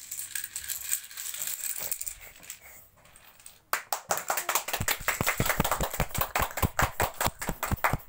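A line of dominoes toppling on a tiled floor: rapid small clicks and clatter. About four seconds in, a steady run of sharp clacks starts suddenly, about five a second.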